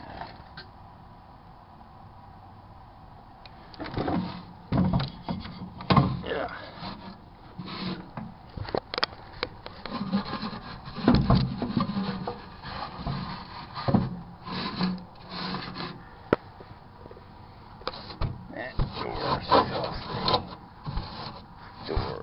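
A Brillo steel-wool pad scrubbing the inside of a microwave oven in irregular rasping strokes, working at caked-on egg residue. The scrubbing starts about three seconds in, after a quiet moment.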